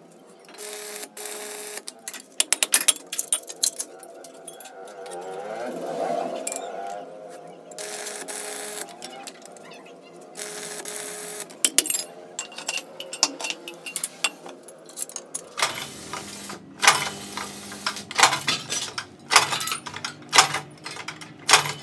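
Sheet-steel plates of a hand-made brick mold clinking and tapping against each other as they are fitted together, in irregular sharp metallic clicks.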